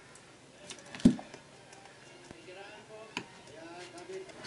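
Hands handling a cardboard phone box: one sharp knock about a second in and a lighter tap about three seconds in, with a faint voice in the background.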